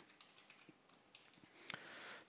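Faint computer keyboard typing: a few soft key clicks as a line of code is typed in.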